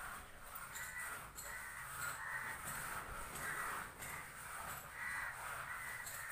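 Crows cawing over and over, about two calls a second.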